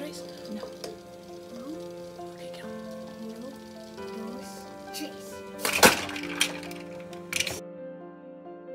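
Background piano music, broken by a few sharp metallic cracks and clinks about six to seven and a half seconds in, the loudest near six seconds: a heated aluminium soda can lifted off the gas burner with tongs and plunged upside down into cold water, where the steam inside condenses and the can is crushed.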